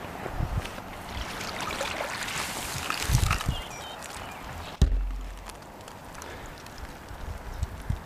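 A plastic-mesh crayfish trap being hauled out of a pond by its line: water splashes and runs off it, with rustling and handling noise. A single sharp knock comes about five seconds in.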